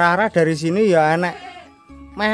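Goats bleating: a short wavering bleat at the start, then a longer one lasting about a second.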